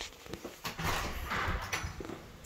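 An interior door being opened and walked through, with a few clicks and footsteps on a hard floor.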